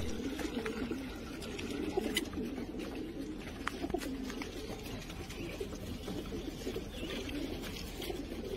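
Several pigeons in a loft cooing together, a continuous low overlapping cooing with a few faint clicks.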